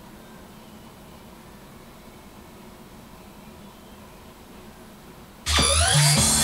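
Low steady room noise with a faint hum; then, about five and a half seconds in, a karaoke machine's scoring-screen music starts abruptly and loudly, with quick rising sweeping tones.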